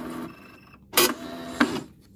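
ITBOX i52N Lite electronic punch card machine printing a time stamp onto an inserted card. It makes a brief mechanical run with a sharp clack about a second in, a short whir, and a second clack about half a second later.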